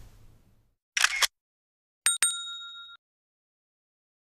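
Subscribe-button sound effect: a short sharp click about a second in, then a bright bell dinging twice just after two seconds and ringing out for under a second.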